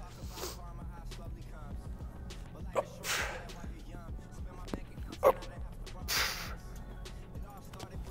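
A man breathing out hard about every three seconds, with short grunts, as he works through slow push-up reps. Background music plays underneath.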